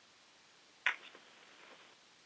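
A single sharp click on a conference-call line about a second in, followed by a couple of faint ticks, against otherwise near-silent line hiss.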